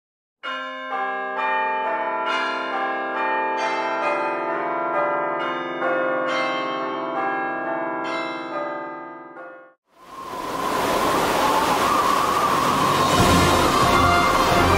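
Bells ringing, a run of struck notes that ring on and overlap, stopping abruptly near ten seconds. A steady rushing noise follows.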